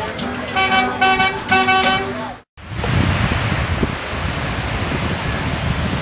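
Three blasts of a horn, each a steady held tone of about half a second at the same pitch. About two and a half seconds in, the sound cuts out and is followed by a steady rush of surf and wind.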